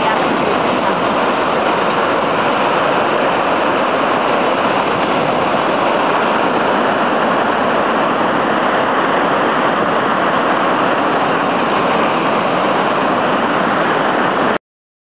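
A large waterfall, its water falling onto rocks close by, making a loud, steady rush of noise.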